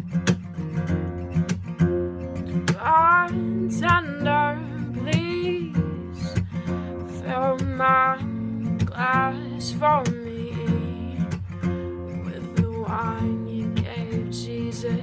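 Taylor 814ce acoustic guitar strummed steadily, with a woman singing phrases over it that glide in pitch.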